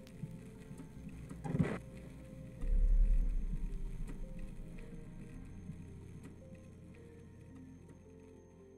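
Outro logo sting over faint background music: a short whoosh about one and a half seconds in, then a deep bass boom that fades away over a few seconds.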